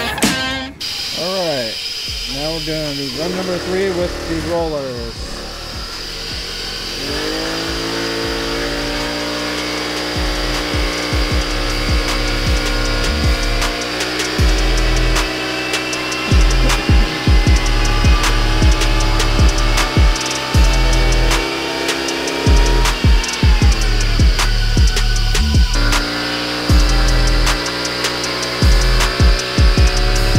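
Honda Navi scooter's small single-cylinder engine on a chassis dyno, fitted with new CVT variator rollers: the revs swing up and down at first, then climb and hold nearly steady as the CVT shifts up, drop off about 23 seconds in and climb again shortly after. Music with a steady beat plays along.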